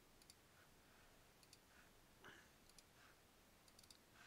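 Near silence with a few faint clicks of a computer mouse, some in quick pairs.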